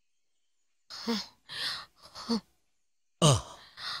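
A person sighing: three short breathy exhalations starting about a second in, then near the end a short voiced "ah" with falling pitch.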